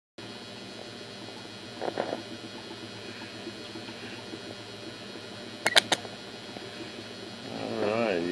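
Steady hiss with a faint hum from an HHO (oxyhydrogen) torch flame playing on copper, with a brief crackle about two seconds in and three sharp clicks in quick succession near six seconds, the loudest sounds here.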